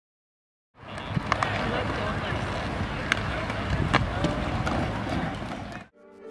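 Murmur of an outdoor crowd with no clear words, broken by several sharp clacks. It starts under a second in and cuts off abruptly just before the end.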